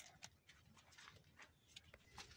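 Near silence, with a few faint light clicks and rustles scattered through it: handling noise from the hands and the cut fruit among the cactus stems.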